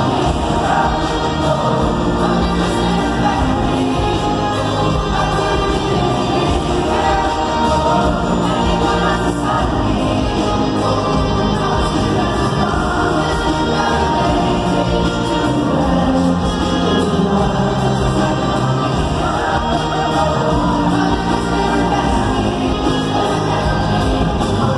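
Live pop concert music in an arena: band playing with singing, loud and steady.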